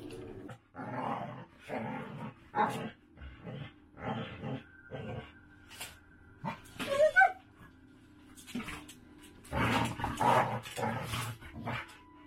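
A chow chow and a rottweiler play-fighting: growls and barks come in short irregular bursts, the loudest a sharp pitched outburst about seven seconds in. The sound is typical of rough play between big dogs rather than a real fight.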